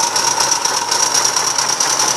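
Model steam locomotive in silver LNER A4 streamlined style working on the spot, a rapid, even ticking of its running gear and exhaust over a steady hissing whine.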